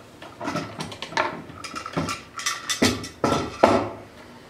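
Homemade slip-roller veneer press being worked: a run of wood-and-metal knocks and scrapes as the hinged wooden top rail and the drum shell shift on the steel roller shaft, with a rubbing squeal through the second half and the loudest knocks near the end.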